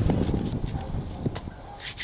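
Handling noise: scattered soft knocks as hands work a ball of dough in a metal bowl, then a rasping rub near the end as a hand brushes close to the camera's microphone.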